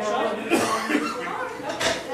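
Indistinct chatter of several voices in a large room, with a cough.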